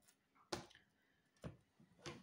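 Two light taps about a second apart as a deck of cards is handled and set down on a table.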